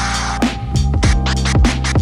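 Forward scratches played from a Serato control vinyl through a Pioneer DJM-S5 mixer over a steady drum beat. The sample plays forwards in several quick strokes, while the backward pulls are muted with the crossfader.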